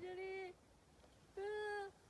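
A high-pitched human voice letting out two drawn-out cries of disgust, 'uwaa', each about half a second long and held on one flat pitch.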